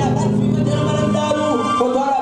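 Amplified live Comorian toirab music: a held chord from the band, with a man's singing voice through the microphone coming in after about a second.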